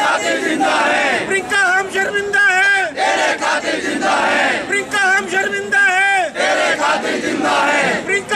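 A crowd of men chanting a protest slogan in unison, the same short shouted phrase repeated over and over in a steady rhythm.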